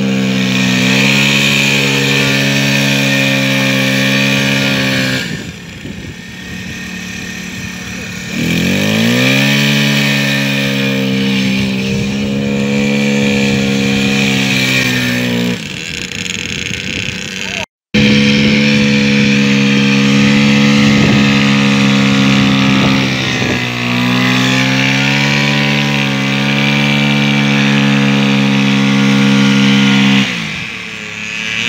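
Piaggio Zip 4T scooter's small four-stroke engine held at high, steady revs while the rear wheel spins on the grass in a stationary burnout. Twice the revs fall back for a few seconds and then climb again.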